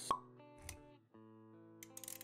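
Intro music with held notes, opening with a short, sharp pop sound effect, the loudest sound here. A soft low thud follows about half a second later, and the notes carry on after a brief break.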